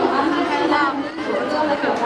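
Several voices talking over one another: speech and chatter that the ear cannot pick out as words.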